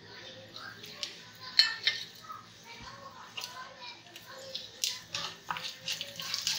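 Panch phoron whole spices frying in hot mustard oil in a kadhai: a light sizzle with scattered sharp pops and clicks, two of them louder, about one and a half and five seconds in.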